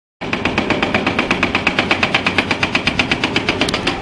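Hydraulic rock breaker on an excavator hammering rapidly, about ten blows a second, over the low running of the machine. It starts suddenly just after the beginning.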